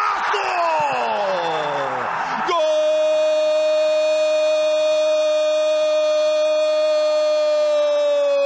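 Stadium crowd roar at a goal, then a TV commentator's long held goal cry, one unbroken note for about six seconds, starting about two and a half seconds in.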